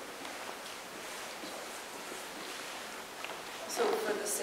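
Faint, indistinct talking over a steady hiss of room noise, with a louder voice starting near the end.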